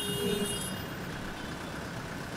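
Quiet, steady background hum of street traffic, with no distinct events.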